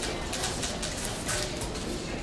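Indistinct background chatter and rustling of people in a room, with scattered faint clicks; no single voice stands out.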